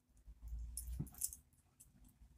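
Faint low rumble of handling and movement close to the microphone, with a brief rising squeak about a second in.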